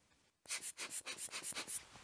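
Fingers rubbing a small freshly sanded spacer clean of sanding dust: a run of quick rubbing strokes, about seven a second, starting about half a second in.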